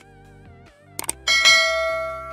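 Subscribe-button animation sound effects: a click about a second in, then a bright bell chime, the loudest sound, that rings out and slowly fades, over soft background music.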